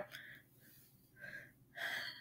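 Quiet pause holding a few faint breaths close to the microphone: one just after a word ends, one about a second in, and one near the end just before speech resumes.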